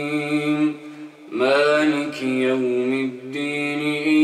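A man's voice reciting the Qur'an in a melodic chant, holding long notes. He pauses for breath about a second in, then starts a new phrase with a rising note.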